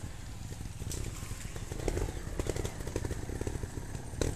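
Trials motorcycle engine running at a distance, with irregular sharp clicks and knocks.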